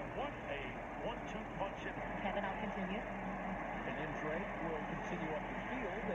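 Faint speech from a television football broadcast, with a steady low hum underneath.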